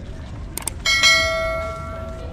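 Subscribe-button sound effect: two quick mouse clicks, then a bright bell chime that rings out and fades over about a second.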